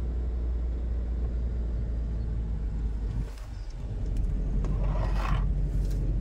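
Cabin noise of a moving car: a steady low engine and road rumble. It dips briefly a little past three seconds, and a short hissing rush comes about five seconds in.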